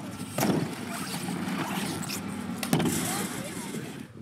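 BMX bike riding a skatepark ramp: tyres rolling on the ramp surface, with sharp knocks as the wheels hit the ramp about half a second in and again near three seconds.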